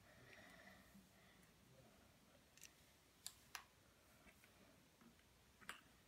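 Near silence, broken by a few faint clicks of plastic pen parts being handled as a ballpoint pen is taken apart, two of them close together in the middle.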